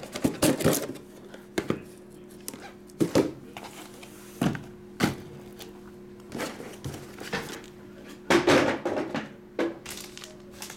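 Sealed cardboard hockey card boxes being picked up and set down on a table, making a string of irregular thunks and knocks. A steady low hum runs underneath.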